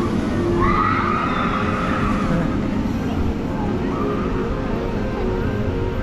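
Steel roller coaster train running along its track: a steady low rumble, with a rising-then-falling whine from about half a second to two and a half seconds in.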